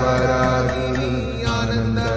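Devotional music: a voice chanting a melodic line over a steady low drone, with a new phrase starting about one and a half seconds in.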